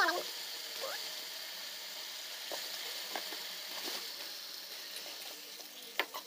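Fish pieces frying in hot oil and turmeric masala in a kadai: a steady sizzle with scattered small crackles and pops. A brief voice-like sound comes right at the start.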